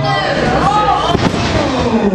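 A wrestler slammed down onto the ring mat: one sharp impact about a second in.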